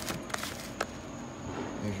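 A few sharp clicks and taps in the first second as a cardboard fireworks cake box is turned over by hand on a wooden stool top.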